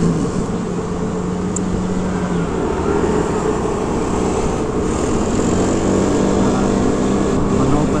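Hero scooter's engine running steadily at low road speed, heard from the rider's seat with road and wind noise.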